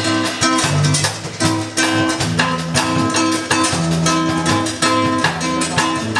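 Acoustic guitar strummed in a steady samba rhythm with an electric bass playing low sustained notes: the instrumental opening of an old samba, before the vocal comes in.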